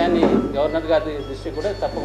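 A man speaking continuously in Telugu, over a low steady hum.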